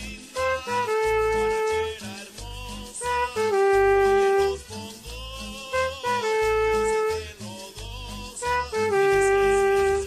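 Trumpet playing a second-trumpet part over a salsa (guaracha) backing track with bass and percussion: four phrases, each a quick pickup of short notes leading into a long held note, the second and fourth held notes a step lower.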